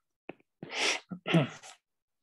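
A man clearing his throat, two short harsh bursts about half a second apart.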